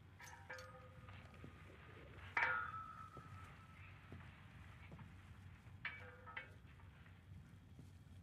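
A few metallic clinks from a brass rope-barrier post being handled, each ringing briefly. The loudest comes about two and a half seconds in, with a pair near the start and another pair around six seconds.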